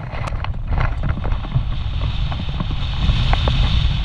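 Wind rushing over a hang glider's wing-mounted camera microphone during a running launch, a heavy low rumble with scattered light knocks. The rush grows a little louder and hissier after about three seconds as the glider gets airborne.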